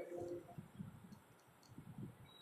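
A few faint, scattered clicks and light taps over a quiet background, just after the end of a spoken word.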